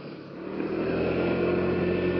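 PGO Buddy 125cc scooter engine running steadily while riding, with road and wind noise; it swells in loudness over the first half second, then holds steady.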